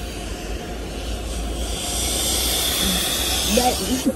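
Car-wash vacuum hose running, a steady hiss over a low rumble that grows louder over the first few seconds as the nozzle comes near; a woman laughs near the end.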